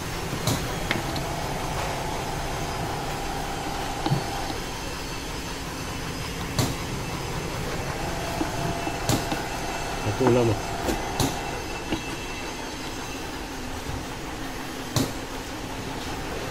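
Sharp clicks and knocks of a plastic food-processor bowl and utensil being handled, about half a dozen a few seconds apart, over a steady mechanical hum.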